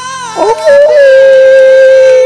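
A man singing along into a close microphone, belting one long, loud, steady note that starts about half a second in, over the song playing more quietly underneath.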